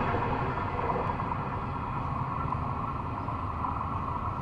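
Steady low rumble with a faint hiss from a distant train on the rails, a little softer than just before, with no clear tone or beat.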